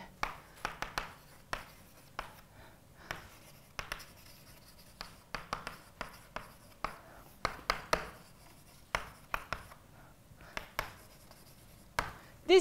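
Chalk writing on a blackboard: irregular clusters of short taps and scratches as letters are written, with brief pauses between words.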